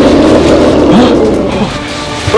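Dinosaur roar sound effect: a loud, long rumbling growl that eases off near the end.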